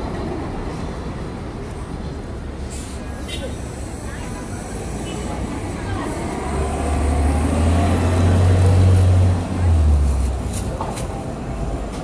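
Busy city street noise, with the deep rumble of a heavy vehicle passing close by swelling about six seconds in and fading after about ten seconds.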